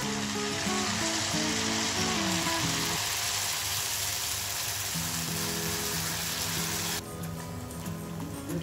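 Jalebi batter sizzling in hot sunflower oil as it is piped into the pan. It gives a dense, steady hiss that cuts off sharply about seven seconds in.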